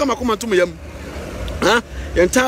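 Voices talking over the low rumble of road traffic as a car drives past, the traffic noise clearest in a short gap in the talk just past the middle.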